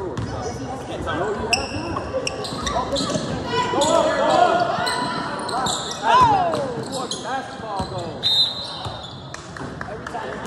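Youth basketball game in a gym: a ball bouncing on the hardwood, sneakers squeaking, and indistinct shouts from players, coaches and spectators, all echoing in the hall. A loud shout about six seconds in is the loudest moment.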